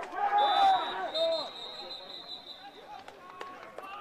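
Distant shouts from players and spectators across an American football pitch as a run is tackled. A thin steady whistle sounds for about two seconds from about half a second in, the referee's whistle ending the play.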